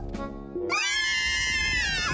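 Cartoon baby voices letting out one long, high-pitched scream, starting about two-thirds of a second in, over background music.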